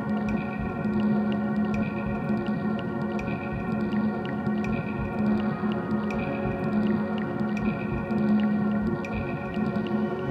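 Live music in an instrumental passage: electric guitar through effects, with held tones that drone on steadily and no singing.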